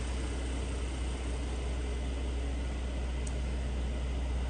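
Steady low hum under an even hiss, unchanging throughout, with a faint tick about three seconds in.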